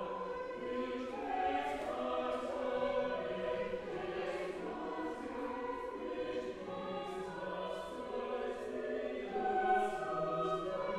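Mixed church choir singing in harmony, moving through a line of long held notes.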